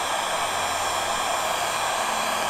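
Electric heat gun running steadily, blowing hot air onto stretched carbon-fibre vinyl wrap so the dented film shrinks back to shape.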